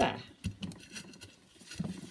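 Alpine grit pattering and scraping as a gloved hand spreads it over the compost of a plastic plant pot, a few faint scattered ticks.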